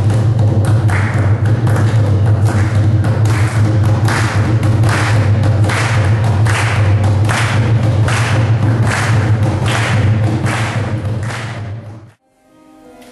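Live hand percussion playing a steady rhythm of sharp struck beats, roughly one to two a second, with lighter strokes between, over a sustained low drone. It cuts off suddenly near the end.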